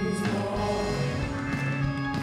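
A worship team of several singers on microphones singing a gospel worship song together, with keyboard and band accompaniment, played live.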